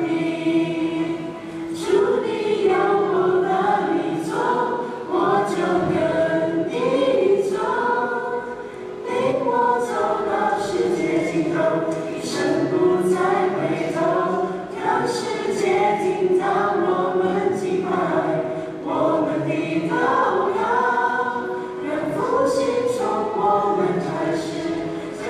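A recorded choral song: a group of voices singing together in continuous phrases, played as the soundtrack of a short film.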